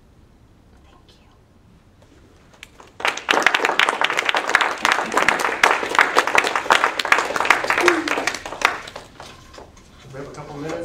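Audience applauding: a short quiet pause, then clapping starts suddenly about three seconds in, runs loud for several seconds and dies away near the end.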